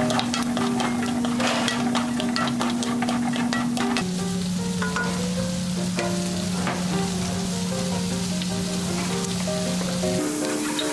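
Sliced garlic, onion and peppers sizzling in duck fat in a wok while a wooden spatula stirs them, with many small clicks and scrapes of the spatula against the pan, most in the first few seconds. Background music with a held low note runs under it.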